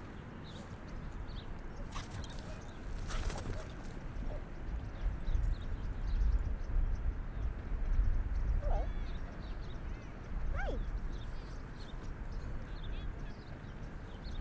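Dogs playing fetch on grass: paw thuds and a couple of sharp knocks close to a ground-level microphone, over a fluctuating low rumble of wind on the mic. Two short, faint calls come late on.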